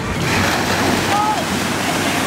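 Small waves breaking and washing onto a sandy beach: a steady rush of surf.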